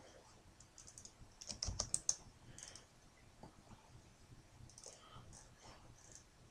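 Faint clicking of a computer keyboard and mouse, with a quick run of keystrokes about one and a half to two seconds in, then scattered single clicks.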